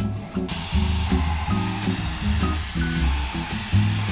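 Handheld hair dryer blowing, a steady hiss that starts about half a second in, over background music with a bass line.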